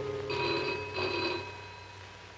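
Telephone bell ringing twice in short bursts, a double ring, as the tail of background music dies away.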